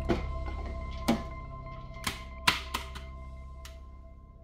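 Background music slowly fading, over five sharp knocks of a plastic food-processor bowl being tapped against a stainless steel pot to shake out grated carrots; the loudest knock comes about two and a half seconds in.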